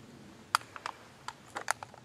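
A series of small, sharp metallic clicks, about seven in quick succession, as .380 cartridges are pressed into a pistol magazine.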